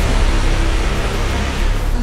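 Film trailer soundtrack: a loud, steady rumbling roar of sound design mixed with music, with no speech.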